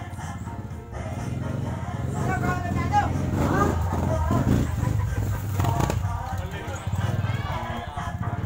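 Indistinct voices over music, with a steady low hum underneath.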